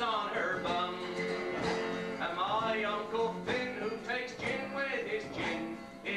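Men's voices singing a folk song together to an acoustic guitar accompaniment.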